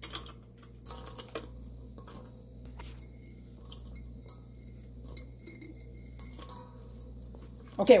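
Wet mung bean sprouts being pulled out of a glass jar and dropping into a stainless steel bowl: faint, soft rustling with scattered light ticks.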